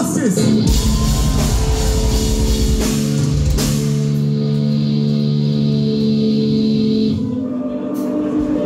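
Rock band playing live on a loud PA: a crash of drums, cymbals and distorted guitars, then a held guitar chord ringing for about four seconds before dropping away near the end.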